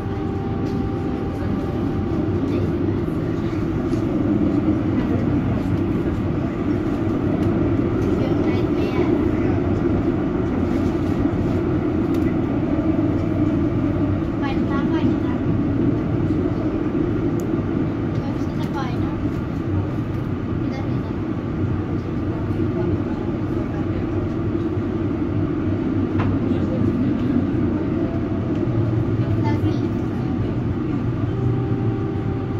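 Valmet-Strömberg MLNRV2 tram heard from inside the car as it runs along street track: a steady rumble of wheels on rails and running gear, growing louder over the first few seconds as the tram picks up speed after leaving the stop.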